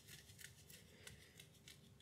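Near silence: room tone with a few faint, soft ticks.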